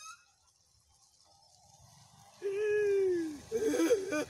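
One drawn-out voiced call, about a second long and slowly falling in pitch, comes after a couple of seconds of near quiet with a faint low rumble.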